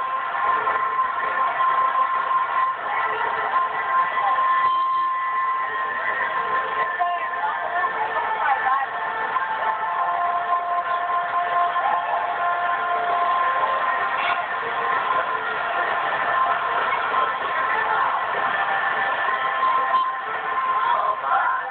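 Soundtrack of a ride video playing on a television, picked up through the room: indistinct voices and crowd noise over held musical tones, steady throughout.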